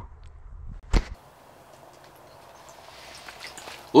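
Faint background noise broken by one sharp knock about a second in, followed by a low, steady hiss.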